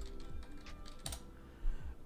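Computer keyboard typing: a few separate keystrokes, one of them sharper about a second in.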